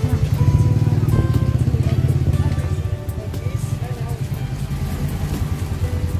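Background music over the low, rapidly pulsing sound of a motorcycle engine idling. The engine eases slightly about halfway through.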